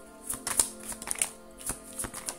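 Tarot cards being handled and flipped onto a table: a quick, irregular run of sharp card snaps and slaps. Soft background music with held tones plays underneath.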